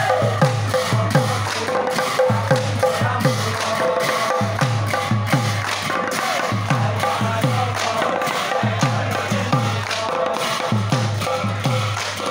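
Assamese devotional naam music: hand drums beaten in a fast, steady rhythm of about three to four strokes a second, each stroke falling in pitch, under the continuous clash and shimmer of large brass hand cymbals (bhortal).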